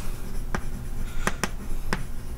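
Chalk writing on a blackboard: about four sharp taps and short strokes of the chalk as letters are written, spread through the two seconds.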